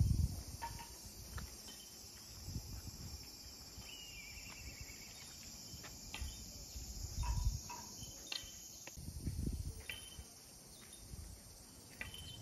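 A steady, high-pitched chorus of insects, with a few short chirps scattered through it and occasional low thumps and rumbles.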